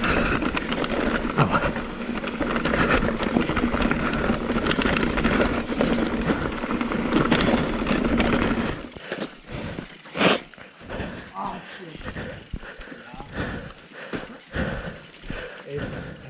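Mountain bike riding over rough trail: continuous tyre and drivetrain rumble with frame and chain rattle. It eases off about nine seconds in into scattered knocks and clicks as the bike slows and stops.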